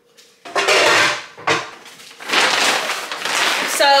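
Pots and kitchen items clattering in a lower cabinet, then a paper grocery bag rustling as it is handled.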